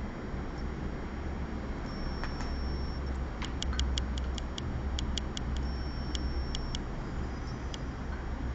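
A steady low hum with light, irregular ticks that come in quick clusters of three or four, most of them in the middle of the stretch.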